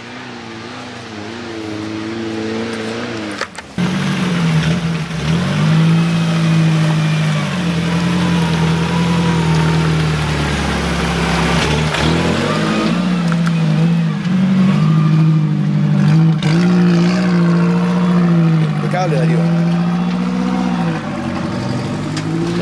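1998 Suzuki Vitara's 1.6-litre four-cylinder engine working under load as it crawls up a muddy rut, its note rising and falling with the throttle. It gets much louder about four seconds in.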